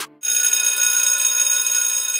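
A short click, then a high, trilling bell sound effect that rings for about two seconds and fades away.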